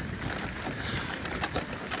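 Wind blowing across the microphone: a steady rush of noise, heaviest in the low end.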